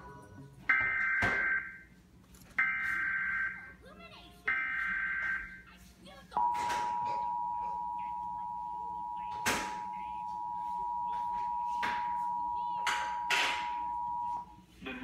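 Emergency Alert System signal played through a TV speaker: three bursts of SAME header data tones, each about a second long, then from about six seconds in the steady two-tone attention signal, two tones just under 1 kHz held together, announcing a Severe Thunderstorm Warning.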